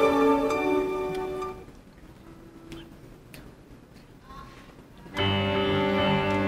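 String orchestra with keyboard playing. Its held notes die away about a second and a half in, and a pause follows with only a few faint clicks. About five seconds in, the full ensemble comes back in loudly, with low notes underneath.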